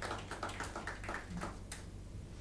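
A quick, irregular series of sharp clicks, several a second.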